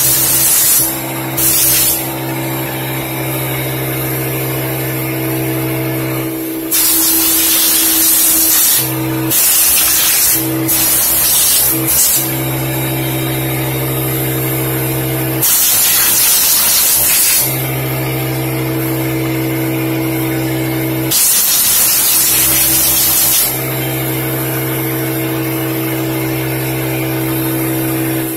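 Bursts of air blown into a Pfaff Hobbylock 788 serger to clear out lint: hissing blasts, some short and some about two seconds long, a few seconds apart, over a steady motor hum.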